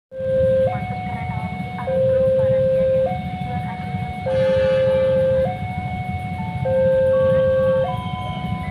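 Electronic level-crossing warning alarm sounding with the barrier down, a two-tone signal that alternates between a lower and a higher tone about every second and a quarter, over a steady low rumble.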